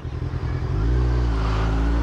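Kawasaki Ninja 1000SX inline-four engine running as the motorcycle rides along in traffic, its note growing louder and steadier about a second in, over a rushing wind noise.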